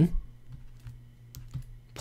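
Stylus tapping on a drawing tablet's surface as handwriting is written: a few faint, short clicks.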